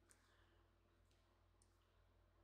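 Near silence: room tone, with a few very faint clicks.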